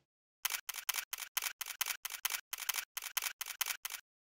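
Camera shutters clicking in a rapid run of about twenty sharp clicks, roughly five a second, with a brief pause near the middle; the clicks stop abruptly at the end.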